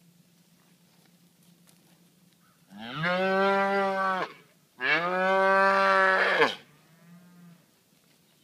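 A heifer mooing: two long, loud calls in quick succession, each about a second and a half, followed by a third, shorter and much fainter call near the end.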